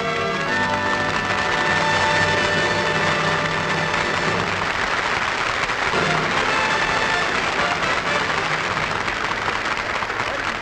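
Studio orchestra with brass playing under audience applause; the held notes thin out after about two seconds and the clapping carries on.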